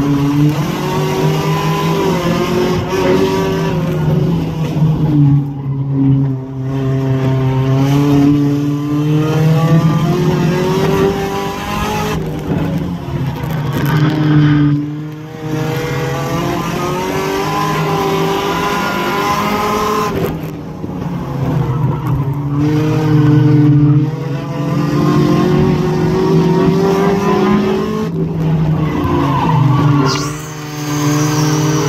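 Hornet-class race car engine heard from inside its cabin at racing speed, the revs climbing and falling back again and again as the car accelerates and lifts off, with brief dips in loudness where the throttle comes off.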